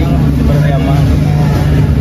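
Steady low rumble of a motor vehicle engine running nearby, an even hum with no rise or fall.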